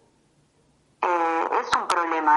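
Near silence for about a second, then a woman's voice starts speaking, opening with a held vowel.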